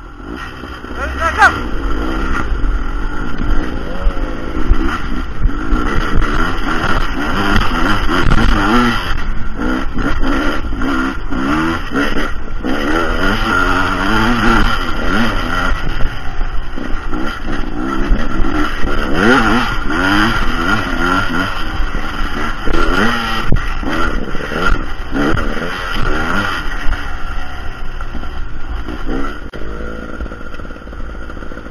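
A dirt bike engine pulls away about a second in, then revs up and down over and over with the throttle as the bike is ridden along a trail.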